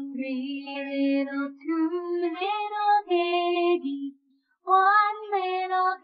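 A single voice sings a children's counting nursery rhyme unaccompanied, counting the little piggies down, with a short breath pause about four seconds in.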